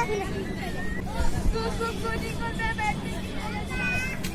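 Children's voices chattering and calling out over one another, with a steady low hum underneath.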